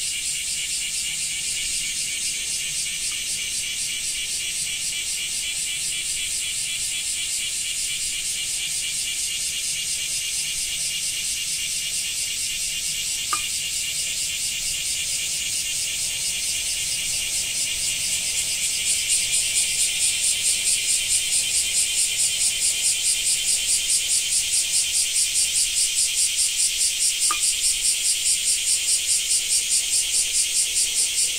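Cicadas calling in chorus: a high, rasping drone. About two-thirds of the way through it grows louder and settles into a steady pulsing of about four beats a second.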